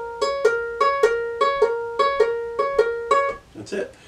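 Ukulele fingerpicked, thumb and middle finger alternating between the second string at the sixth fret and the first string at the fourth fret: an even run of about a dozen plucks swapping between two close notes, about three or four a second. The picking stops about three and a half seconds in.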